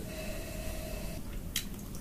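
A brief wet sip or slurp of whisky from a tasting glass, about one and a half seconds in, over faint low room hum.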